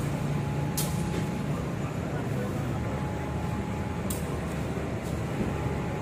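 Diesel-electric locomotives running in a station yard with a steady low rumble, and a few short hisses of air now and then.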